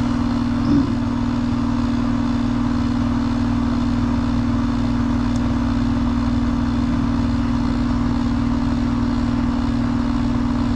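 Rheem heat pump outdoor unit running steadily: the compressor and condenser fan give a constant low hum over fan noise. The superheat is near zero, so liquid refrigerant is flooding back to the compressor, from a system the technician thinks is overcharged.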